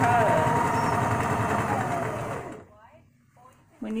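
Electric home sewing machine running fast, its needle stitching rapidly with a steady motor whine, then stopping abruptly about two and a half seconds in.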